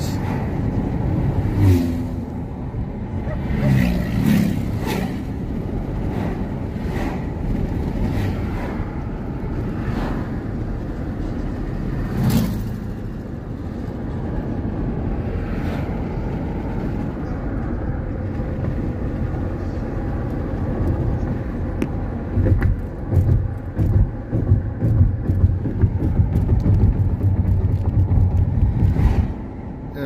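Car cabin noise while driving: a steady low rumble of engine and tyres on the road. It grows louder and uneven, in pulses, over the last several seconds.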